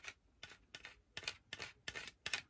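Plastic scraper tool rubbing quickly over transfer tape on a glass shot glass, a faint series of short scratchy strokes, several a second. It is burnishing a vinyl decal so that it sticks to the glass.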